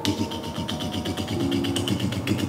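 A man making a rapid rattling imitation of automatic gunfire with his mouth, about ten beats a second, over soft background music.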